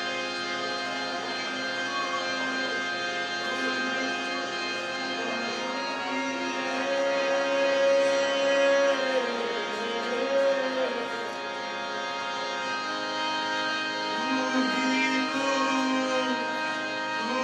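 Live band music: a steady harmonium drone of many held tones under a gliding, bending melody line.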